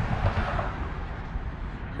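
Outdoor background noise: a steady low rumble with a faint hiss above it and no distinct events.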